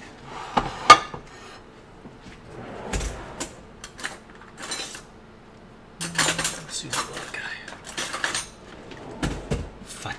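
Dishes and containers being handled on a kitchen counter: scattered sharp clinks and knocks, the loudest just before a second in, then a busier run of clattering from about six seconds on.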